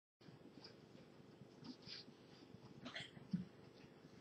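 Near silence: faint room tone with a steady low hum and a few soft, brief sounds, the loudest a little over three seconds in.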